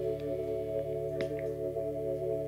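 Electric guitars holding a sustained chord that rings out as a steady drone at the end of a rock song, with the drums stopped. A couple of light sharp clicks come a little over a second in.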